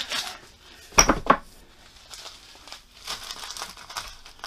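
Kitchen dishes and cookware being handled: two sharp clinks about a second in, the loudest sounds, amid rustling.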